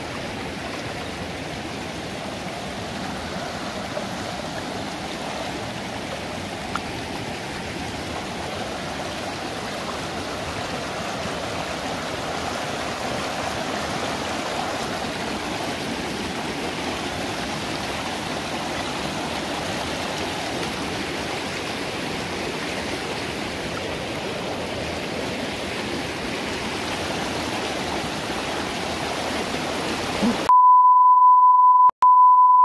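Shallow rocky creek running fast over stones: a steady rush of water close by, with a couple of faint clicks in the first few seconds.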